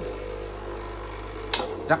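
A Denyu two-wheel bench grinder running with a steady, quiet motor hum, which the seller calls very quiet. A sharp click sounds about one and a half seconds in, and the low part of the hum begins to fall away just after.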